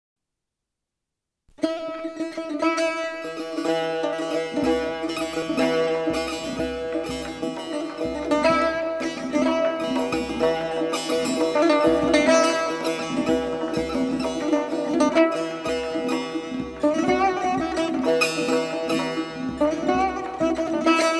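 Solo Persian tar, its strings struck with a plectrum, playing a chaharmezrab in Mokhalef-e Segah: a fast, rhythmic run of plucked notes over a repeated low open-string note. The music starts about a second and a half in, after silence.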